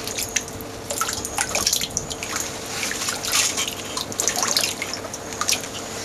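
Red rubber rain boots sloshing and splashing in a tub of muddy water: a quick, irregular run of splashes and drips as the feet move up and down.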